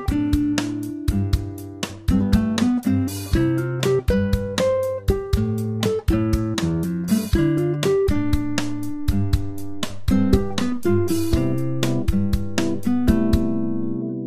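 Background music: a quick run of plucked string notes, guitar-like, each ringing and fading.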